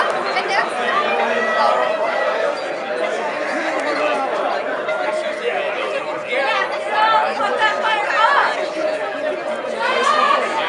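Onlookers chattering: several people talking at once, indistinct, with a steady hum underneath.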